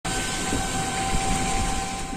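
Steady engine and road noise heard from inside a moving bus, with a faint steady whine over the rumble.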